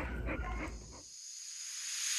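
Faint footsteps and rustling on a dirt yard fade out. Then a hissing noise swell rises steadily in level, the build-up into an electronic music track.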